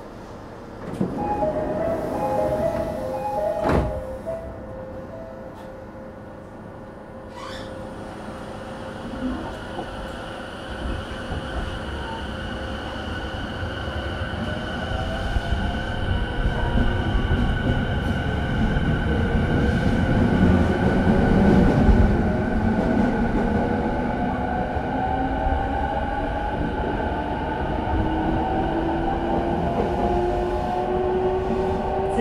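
Inside a JR East E217 series motor car with a Mitsubishi IGBT VVVF inverter, at a station stop: a short two-tone door chime sounds about a second in and the doors knock shut just before four seconds. The train then starts off, and the inverter and traction motor whine climbs steadily in pitch as it accelerates, with running noise building under it.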